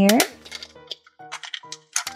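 Short hard-plastic clicks and taps as a toy ball's plastic handle is fitted onto the ball, over soft background music.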